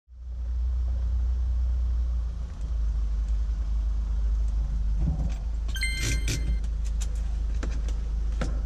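Steady low drone of a Hyundai Starex van's engine heard from inside the cabin. About six seconds in, a brief metallic jingle with clicks, like keys, followed by a few light clicks.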